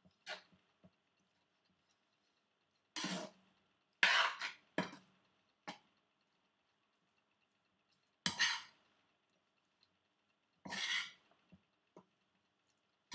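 A spoon scraping and scooping fried rice around a cast-iron skillet while stirring, in about eight short strokes, each under a second, with quiet gaps between.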